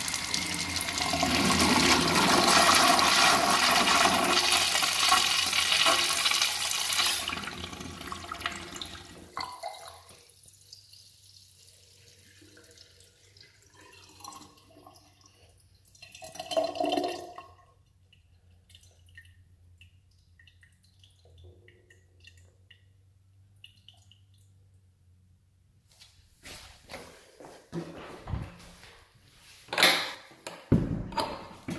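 Urinal flush valve (chrome flushometer) flushing: a loud rush of water into the bowl for about nine seconds, then tapering off. A brief louder sound comes about sixteen seconds in, and scattered knocks near the end.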